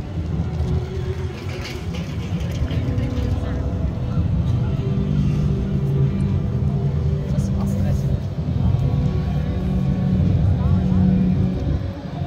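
Busy downtown street ambience: passers-by talking over a steady rumble of traffic, with music playing.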